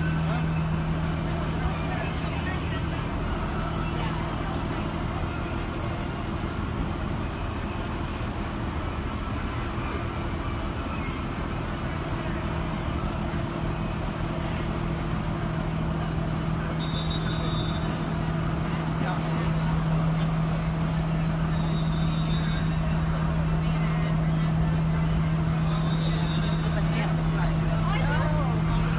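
City street ambience: indistinct voices of passers-by and traffic, over a steady low hum that runs throughout. A few short high beeps come in during the second half.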